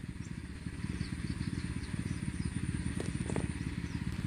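A faint, steady low engine rumble in the background, like a small motor running, with a few soft knocks near the end.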